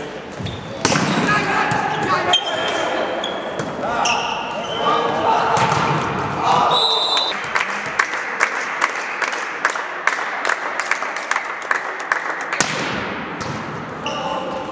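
Indoor volleyball game: a ball is struck hard about a second in and players shout. Around the middle a referee's whistle sounds briefly, followed by a steady run of sharp slaps at about three a second. A hard smack near the end is the ball being hit on the serve.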